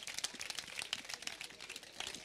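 Faint handling noise: scattered small clicks and a crinkling rustle, with no voice.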